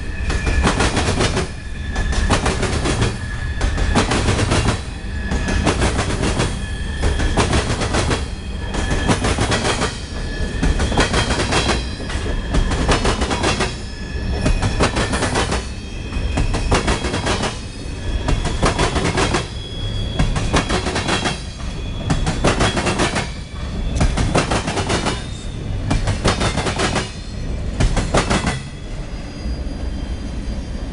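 A CSX freight train of covered hoppers and tank cars rolling past close by. It makes a steady loud rumble with a rhythmic clickety-clack of wheels about once a second, which thins out near the end.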